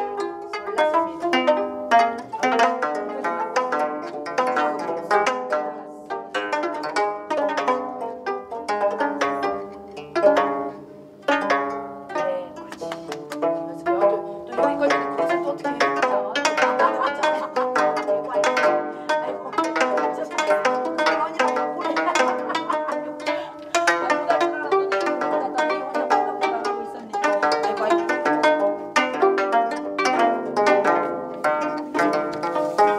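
Several gayageum, Korean plucked zithers, played together, a steady stream of plucked notes carrying a folk-song melody, with a brief lull about eleven seconds in.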